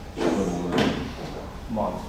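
A man's voice speaking in two short bursts.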